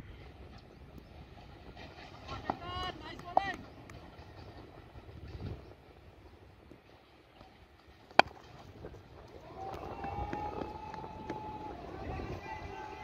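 A single sharp crack of a cricket bat striking the ball about eight seconds in, the loudest sound here. Brief shouted calls from players come before it, about two to three seconds in, and from about ten seconds a long steady tone with several pitches runs on.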